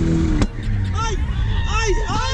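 Jaguar F-Type engine revving high during a drift, its pitch held up and then cut off abruptly about half a second in. After that, voices shout over the engine's low rumble.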